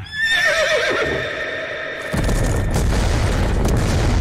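A horse whinnies loudly, a wavering call that falls in pitch over about two seconds. About two seconds in, a deep explosion rumble sets in and carries on.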